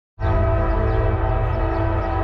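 Freight locomotive air horn sounding one steady, held chord over a low rumble from the approaching train.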